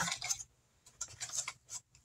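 Light scratchy rustling of an opened cardboard kit box and the paper contents inside as it is handled: a few short, faint scrapes about a second in.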